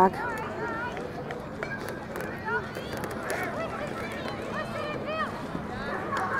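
Faint, scattered chatter and calls from many people at an outdoor ballfield, with no one speaking up close.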